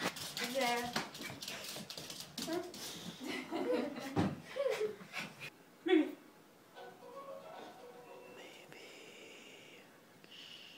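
Excited voices of a boy and adults, no clear words, with knocks and clatter for the first five seconds. After a loud sudden sound about six seconds in, it goes quieter, with a thin high tone near the end.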